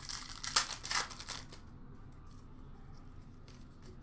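The wrapper of an Upper Deck Series 1 hockey card pack crinkling and tearing as it is pulled open, in a burst of rustles over the first second and a half. A few soft clicks follow near the end.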